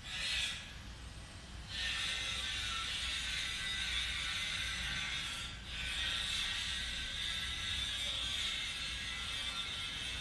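Construction machinery outside starting up again about two seconds in: a steady, high mechanical whir that runs on, with a brief break a little past the middle.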